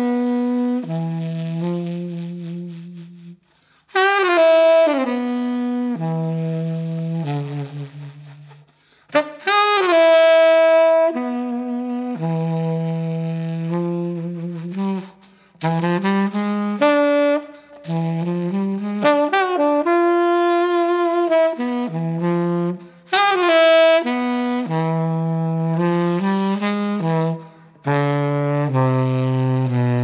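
Jazz music led by a tenor saxophone playing phrases of falling notes, each a few seconds long, with short pauses between them.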